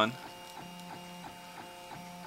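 MendelMax 3D printer's stepper motors whining in steady tones as the print head traces the part, with short breaks a few times a second as one move gives way to the next.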